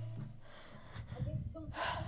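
A woman's audible intake of breath near the end of a pause in her speech, over a low steady hum.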